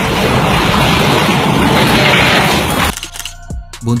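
Violent storm wind: a dense rushing noise that cuts off suddenly about three seconds in, after which background music is left.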